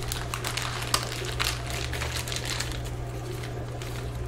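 Clear plastic bag crinkling in irregular crackles as a reverse osmosis membrane cartridge is pulled out of its wrapping, over a steady low hum.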